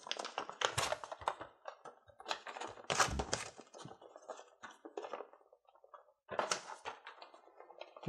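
A folded glossy paper leaflet being unfolded and handled: crackling, rustling paper in irregular bursts, with a brief lull a little past the middle.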